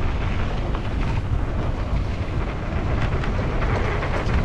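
Riding a mountain bike down a dirt trail: steady wind buffeting on the camera's microphone over the rumble of the tyres on the dirt, with scattered light rattles and clicks from the bike.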